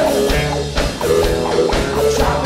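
Live blues-rock band playing: electric guitar over a drum kit with steady drum and cymbal hits.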